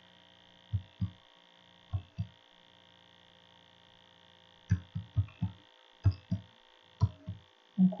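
Computer keyboard keystrokes: about a dozen short, dull taps in small clusters as a six-digit code is typed, over a steady electrical hum.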